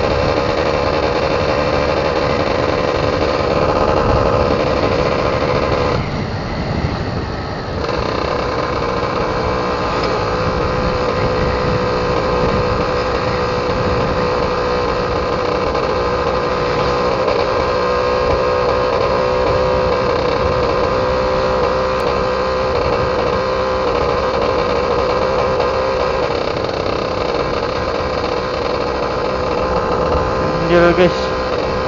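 Yamaha F1ZR's two-stroke single-cylinder engine running steadily under way. About six seconds in, its note drops for about two seconds, then picks up again.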